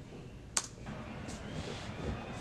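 A single sharp computer click about half a second in, then the faint steady crowd noise of a football match broadcast starting to play.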